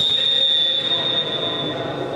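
Referee's whistle: one long, steady, high blast that fades near the end.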